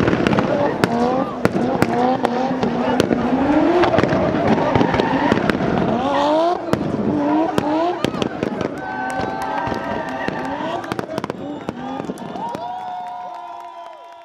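Turbocharged 1JZ straight-six in a drifting BMW E36, revving up and down hard with many sharp exhaust pops and cracks over tyre noise. The sound fades away near the end, where a few steady held tones come in.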